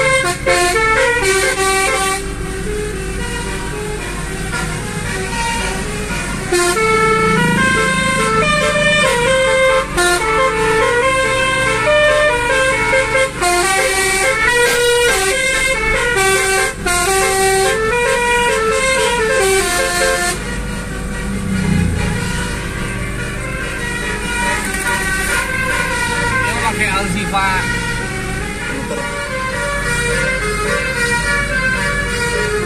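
Car-mounted multi-tone 'basuri' telolet air horn played note by note from a dashboard keypad, sounding a stepped melody of bright horn notes over engine and road noise. The tune is loudest for the first twenty seconds or so, then carries on more quietly.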